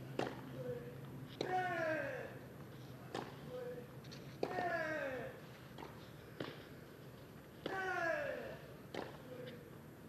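Tennis rally on a clay court: racket strikes on the ball about every one and a half seconds, with one player grunting on every other shot, each grunt falling in pitch.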